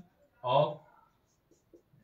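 Marker pen writing on a whiteboard, faint, with one short spoken word from a man about half a second in.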